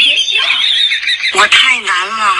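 A small dog squealing shrilly, then giving a quick run of short yelping cries that rise and fall in pitch.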